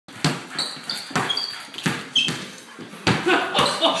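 An inflated ball bounced on a hardwood floor, with four sharp bounces about a second apart and brief high squeaks between the early bounces.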